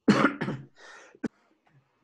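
A man coughing into his fist: a loud burst of coughing at the start, then a quieter breath.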